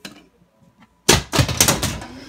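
A toy BB-8 droid knocked over by hand, falling and clattering onto a wooden floor: a quick run of loud knocks starting about a second in.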